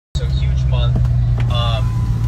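Steady low drone of a car's engine and road noise heard inside the cabin, with a couple of short voice exclamations over it.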